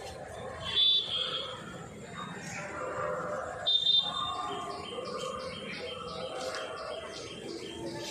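Birds calling outdoors: two loud, short, high calls about a second in and just before four seconds, then a high note repeated about two to three times a second, over faint distant voices.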